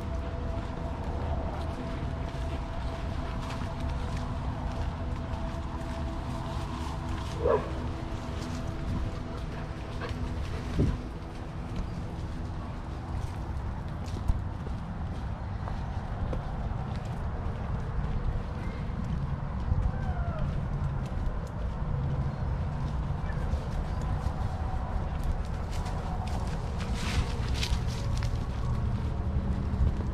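A dog's brief whine about seven seconds in, and another short one a few seconds later. Under them runs a steady low rumble of wind on the microphone.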